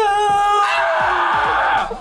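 A man singing in a strained voice: a held note that breaks into a rough, raspy screech about half a second in and fades out near the end.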